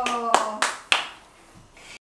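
Hand claps: three sharp claps within about the first second, then they stop.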